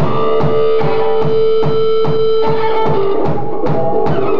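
Live rock band with violin, electric guitar, bass, drums and keyboards playing an instrumental intro. A long note is held over a steady drum beat of about two and a half strokes a second.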